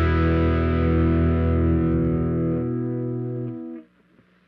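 Final chord on a distorted Gibson Les Paul electric guitar ringing out and slowly fading, its lowest notes dropping away, then cut off abruptly near the end.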